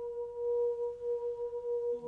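A sustained ringing tone at one steady pitch, with a fainter overtone an octave above, wavering slightly in loudness like a singing bowl's hum.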